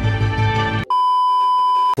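A short burst of music holding one steady chord, then a steady electronic beep at a single high pitch lasting about a second, which cuts off suddenly.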